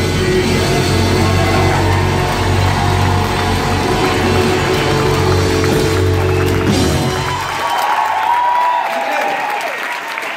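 Live rock band with saxophone playing the final bars of a song, heard from the audience. The music stops about three-quarters of the way through, and the crowd cheers and applauds.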